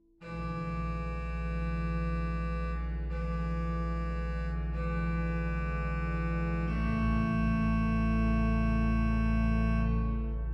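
Hauptwerk virtual pipe organ playing loud, full held chords over a deep pedal bass. The chord changes about three times before it is released near the end and fades away in reverberation.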